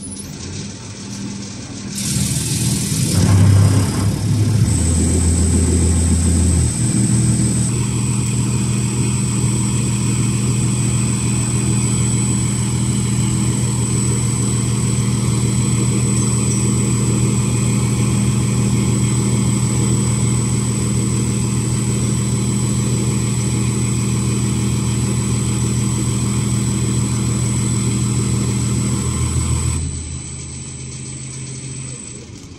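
Common rail test bench driving a Denso HP0 diesel supply pump through a test run: the drive spins up about two seconds in, surges briefly, then runs steadily with a low hum and a thin high whine that sets in a few seconds later.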